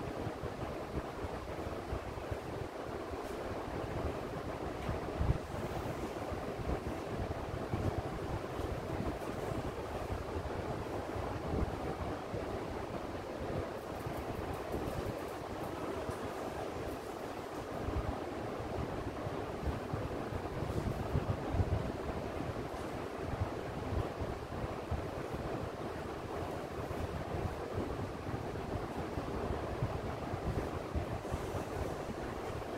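Steady rushing background noise with no speech, with a few brief low bumps scattered through it.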